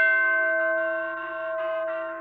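Electronic doorbell chime: several bell-like notes strike at once, then more join in while they all ring on and slowly fade.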